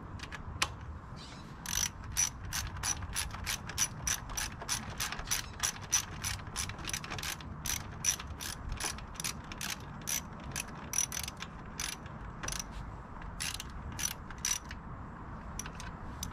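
Hand ratchet wrench clicking steadily, about four clicks a second, as it turns a bolt, with a brief pause near the end.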